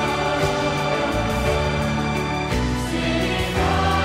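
Live praise-and-worship music: many voices singing together as a choir over the band, with the chord changing twice.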